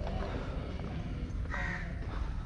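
A bird calling once near the end, a short call over a steady low rumble from wind or handling on the microphone.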